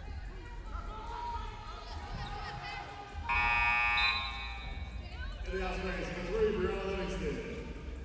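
Basketball arena horn sounding once for about a second, about three seconds in, over the arena's background noise: the scorer's table horn signalling a substitution after a foul. Voices follow over the crowd in the second half.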